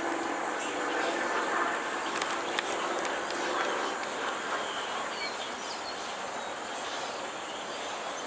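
Open-field outdoor ambience: a steady wash of noise with a faint low drone during the first few seconds, a few light clicks, and a couple of short bird chirps around the middle.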